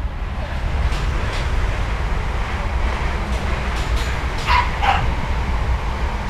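Two short dog barks in quick succession about four and a half seconds in, over a steady low rumble.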